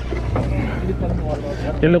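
Sportfishing boat's engine running with a steady low hum, with other anglers' voices faintly behind it.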